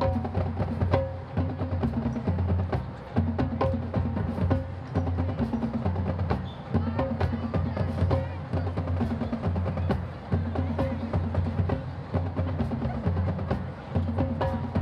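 Marching band drumline playing a cadence: repeating bass drum beats with snare rolls and sharp stick clicks.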